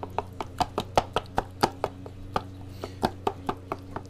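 Taping knife knocking and scraping against the sheet-metal edges of a drywall mud pan while working joint compound: quick, uneven clacks about four or five a second. A steady low hum runs underneath.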